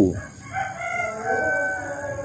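A rooster crowing: one long, drawn-out crow that starts about half a second in.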